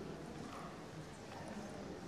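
Footsteps clicking in a steady walking rhythm on the hard stone floor of a large glass-and-iron colonnade hall.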